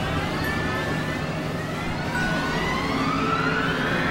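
Experimental synthesizer drone: many layered tones glide down in pitch, then up again in the second half, over a steady low hum and a constant noisy hiss.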